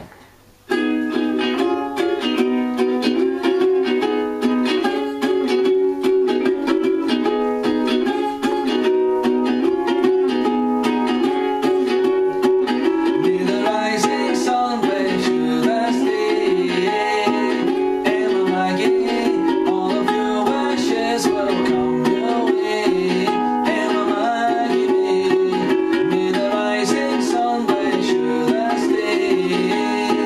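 Ukulele strumming a song, starting abruptly about a second in, with a sustained melody line carried over it.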